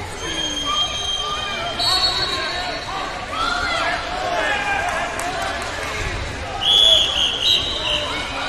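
Many voices in a large echoing hall, with coaches and spectators calling out over one another. Several short high-pitched tones cut through, the loudest about seven seconds in.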